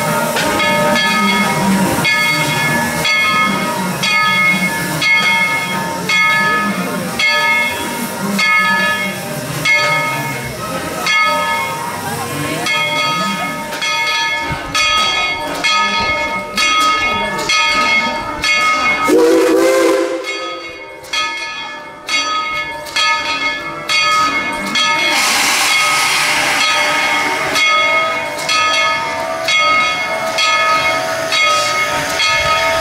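Steam locomotive standing with steam hissing and a ringing, bell-like tone struck again about once a second. About two-thirds of the way in there is a brief low rising tone, and near the end a louder rush of steam.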